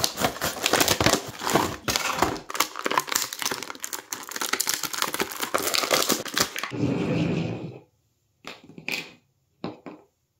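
Clear plastic blister packaging and cardboard of an action-figure package being torn open and handled: dense crinkling and crackling with many sharp snaps for about seven seconds. It ends in a brief lower sound.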